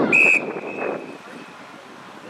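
Rugby referee's whistle: one short, sharp blast that trails off into a fainter held note, blown as play stops at a ruck. Players' shouts and voices sound around it.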